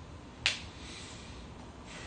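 A single sharp click about half a second in, then quiet room tone.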